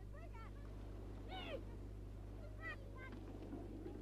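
Faint distant voices calling out three times, each call falling in pitch, over a low steady hum.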